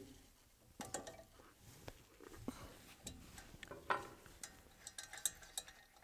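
Faint, irregular metallic clicks and clinks of an open-end wrench working on the steel motor bolts of a pump's motor bracket, breaking them loose.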